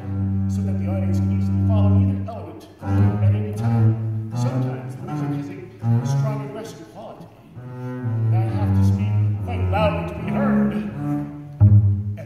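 Double bass played with a bow: a series of long, held low notes, one after another, with a few sharper attacks between them.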